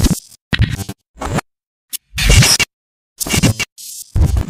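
Glitch-style intro sting: a string of short, loud bursts of scratchy, stuttering electronic sound with dead-silent gaps between them, the loudest a little past the middle.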